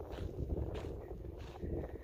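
Wind buffeting the microphone, a low uneven rumble, with a few faint footsteps on a dry dirt path.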